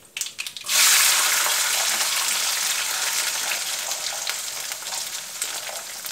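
Peeled garlic cloves tipped into hot oil in a nonstick wok: a sudden loud sizzle just under a second in, settling into a steady frying hiss that slowly eases.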